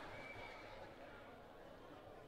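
Faint outdoor ground ambience, with a distant held shout lasting under a second at the start.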